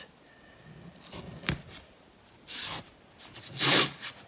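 FrogTape painter's tape being pulled off the roll in two short zipping rips, after a single knock.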